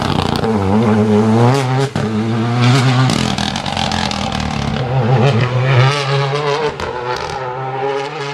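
Renault Clio rally car's engine revving hard as it accelerates past and away. The pitch climbs and drops back repeatedly with each gear change, with a brief lift about two seconds in and a few sharp cracks.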